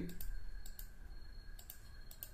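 A few faint, scattered clicks of a computer mouse.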